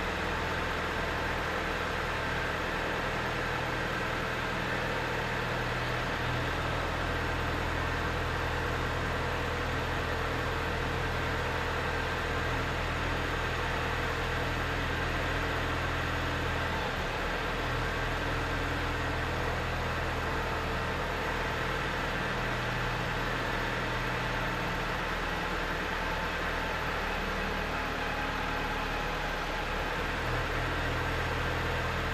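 Backhoe loader's diesel engine running steadily at idle. Its low note shifts slightly a few times as the operator works the machine.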